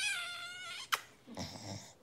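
A beagle gives one high, thin whine lasting about a second, which ends in a short click, followed by a fainter, lower sound.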